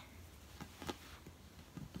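Mostly quiet room with a few faint, light taps as a baby's hands pat and push a large inflated ball.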